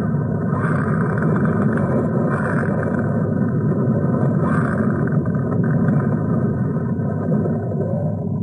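Flowing lava: a steady, deep rushing noise with no let-up.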